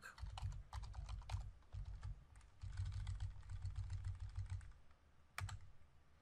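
Typing on a computer keyboard: a quick run of key clicks, ending with a last single keystroke about five and a half seconds in.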